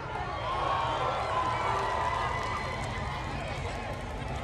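Stadium crowd in the stands, many overlapping voices talking and calling out with no band playing.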